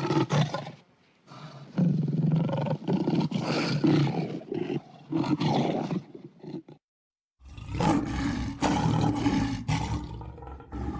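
Lion roaring: a run of deep, rough roars and grunts. The sound cuts out completely for about half a second near seven seconds in, then the roaring starts again.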